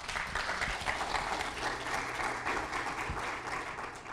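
Audience applauding, a dense clatter of many hands clapping that starts at once and keeps up steadily.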